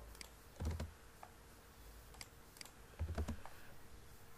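Faint, scattered clicks of a computer keyboard and mouse: about eight sharp keystrokes and clicks at uneven intervals, two of them heavier with a dull low thud.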